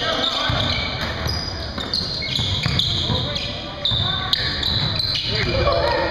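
Basketball being dribbled on a hardwood gym floor, with sneakers squeaking in short high chirps as players cut, and players' voices calling out over the play.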